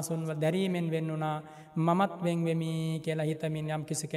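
A Buddhist monk's voice chanting Pali in a drawn-out, level monotone, with a brief pause for breath about halfway through.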